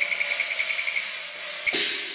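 Cantonese opera percussion accompaniment: a fast roll of high knocks, about ten a second, breaks off into a cymbal crash near the end.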